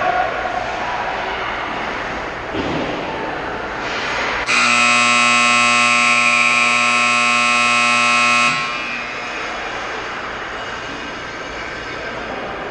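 Ice arena's scoreboard horn sounding one long steady blast of about four seconds, starting about four and a half seconds in, signalling the end of a period. Before and after it, the open hum of the rink.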